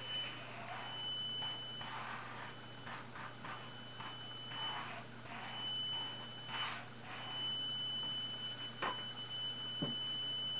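Buzzer driven by a micro:bit at 3,000 Hz sounding one steady high tone into a plastic tube, swelling and fading several times as a piston slides back and forth inside. It gets loud where the air column's length sets up a standing wave, that is, resonance.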